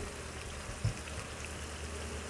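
Chicken tails frying over high heat in their own rendered fat in a pan, a steady sizzle as the fat cooks out into chicken oil. A soft low knock sounds just under a second in.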